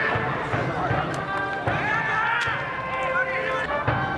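Brass-band cheering music with shouting and chanting voices from the stands, held notes and voices overlapping, densest about two seconds in.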